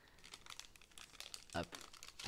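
Foil wrapper of a 1992 Upper Deck baseball card pack crinkling faintly as gloved hands peel it open and slide the cards out.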